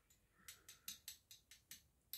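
A run of faint quick clicks, about five a second, from an upturned hot sauce bottle as thick sauce is coaxed out onto a spoon.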